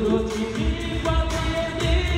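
A male singer performing a Bengali pop song live into a microphone over instrumental backing, amplified through stage speakers, with long held sung notes.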